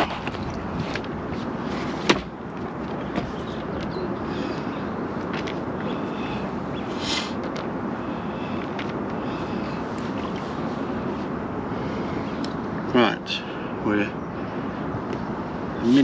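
Steady outdoor background noise, much like wind on the microphone, with a single sharp knock about two seconds in and a brief voice near the end.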